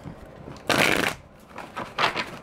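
A deck of tarot cards being shuffled by hand. A loud rush of card on card comes about two-thirds of a second in and lasts under half a second, followed by a few short, softer riffles near the end.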